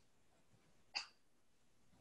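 Near silence with faint room tone, broken once about a second in by a single very short, faint blip.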